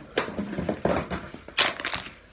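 Close handling noise: a string of short, irregular crackles and rustles as plush toys and fabric are moved right by the microphone, with a stronger burst near the end.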